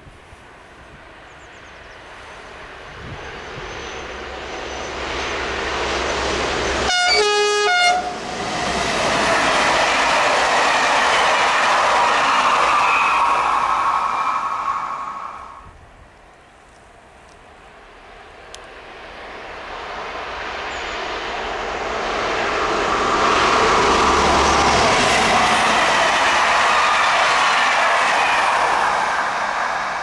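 Two SNCF BB 22200 electric locomotives, each hauling Corail coaches, pass one after the other, their wheels rolling on the rails. The sound builds to a loud, steady peak and fades before the second train comes in and builds again. The first locomotive sounds a brief horn blast about seven seconds in.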